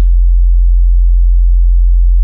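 A steady low sine-wave sub-bass tone from Ableton Live's Operator synth, played dry with the Stutter Edit 2 effects switched off. It starts suddenly and holds at one pitch.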